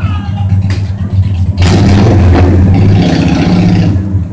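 An engine running low and steady, with a loud rushing noise for about a second starting about a second and a half in.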